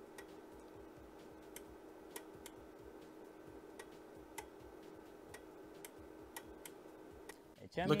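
Faint, short clicks of a bench DC power supply's voltage knob being turned, at uneven spacing of roughly two a second, over a faint steady hum.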